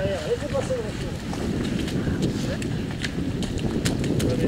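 Runners' feet splashing and squelching through a shallow muddy stream, a quick run of short steps. Voices talk over it near the start.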